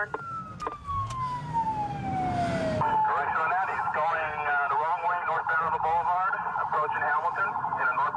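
Police car siren: a long wail winding down in pitch over the first three seconds, then switching to a fast, warbling yelp that runs on.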